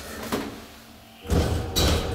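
Elevator car jerking into motion: a faint click, then about a second and a half in a heavy thump with a low rumble and a second sharp knock just after it, a rough, jolting start.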